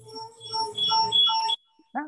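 A short synthesized tune: a steady held note with three or four brighter repeated notes over it, cutting off suddenly shortly before the end.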